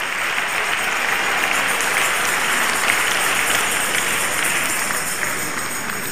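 A large seated audience clapping in steady, sustained applause that eases slightly near the end.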